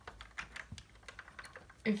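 Lego plastic pieces clicking and tapping, irregular small clicks, as a hand pushes small brick boxes along a Lego conveyor belt.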